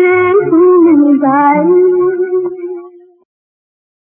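A female playback singer of a 1960s Urdu film song holds a long final note over the orchestral accompaniment, and the music fades out and ends about three seconds in.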